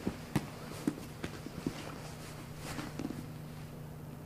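Bare feet and bodies shifting on a grappling mat: a handful of short, soft thumps and scuffs, the strongest about a third of a second in, over a steady low hum.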